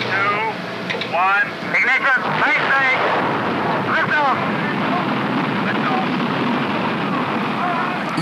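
Men's voices calling out over a steady rushing noise, then, about four seconds in, the even rushing noise of the Jupiter-C rocket's engine as it lifts off carrying the Explorer satellite.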